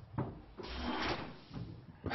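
Handling noises close to the microphone: a sharp knock, then about half a second of rustling scrape, and another knock at the end.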